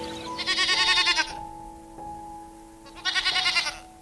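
A goat bleats twice, each a wavering call just under a second long, about two seconds apart. Soft background music with long held notes plays underneath.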